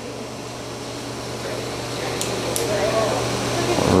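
Steady low hum and hiss of operating-room equipment and ventilation, slowly growing louder, with two faint ticks a little past two seconds in.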